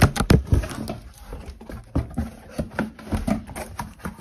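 Cardboard speaker box and its plastic packaging being pulled open by hand: a rapid string of sharp clicks, knocks and crackles with cardboard and plastic rustling, loudest in the first half second.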